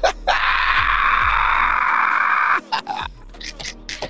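Background music with a loud, steady burst of noise lasting about two seconds that cuts off suddenly, followed by a few short sharp sounds.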